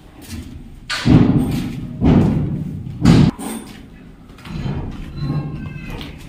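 Footsteps on a bare concrete floor strewn with rubble: three heavy thumps about a second apart, then softer steps.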